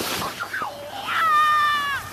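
A child's high-pitched squeal as a sled sets off down a snowy hill. It is held for nearly a second near the end and falls slightly in pitch, after a short rush of sliding noise at the start.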